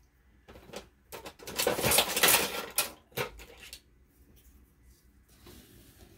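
Large sheets of paper and card rustling as a stitched journal page is flipped over and handled, loudest about one to three seconds in, with a few light clicks.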